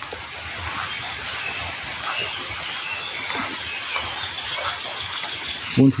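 Outdoor ambience: a steady high hiss with faint bird chirps over it.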